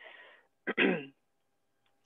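A person clearing their throat once, a short rough burst about two-thirds of a second in.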